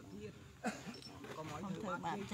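A person's voice talking in short phrases, with a sudden sharp, louder sound about two-thirds of a second in.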